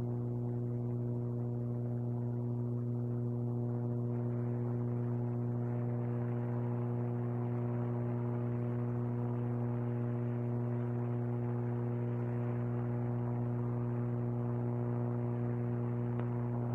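A steady low hum with a stack of even overtones, joined by a soft hiss that builds from about four seconds in.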